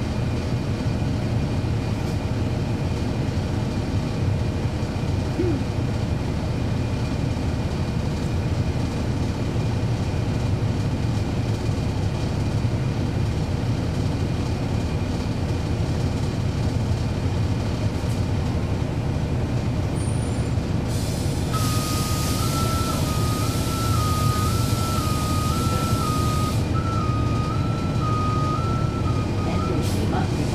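Cummins ISL9 straight-six diesel of a NABI 40-SFW transit bus running steadily, heard from inside the bus. About two-thirds of the way through, air hisses for about five seconds, and an electronic alert beeps back and forth between two pitches until near the end.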